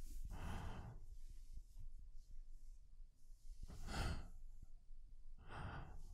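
A man breathing slowly and close to the microphone: three soft breaths or sighs, the first just after the start, one around four seconds in, and one near the end.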